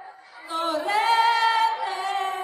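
A woman singing a cappella: after a brief gap her voice comes in about half a second in and holds a long high note, with a lower male backing voice harmonising beneath it.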